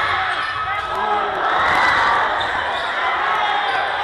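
Crowd noise in a gym during a basketball game: many voices talking and calling out from the stands, with a basketball being dribbled on the hardwood court.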